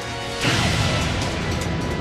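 Cartoon explosion sound effect of an attack striking: a sudden blast about half a second in that trails off into a long noisy rumble, over dramatic background music.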